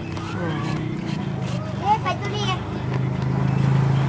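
An engine running steadily with a low hum that grows louder near the end.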